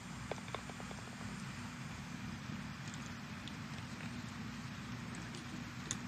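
Faint outdoor ambience on a golf putting green: a steady low hum with a quick run of faint ticks about half a second in and a single sharp click near the end.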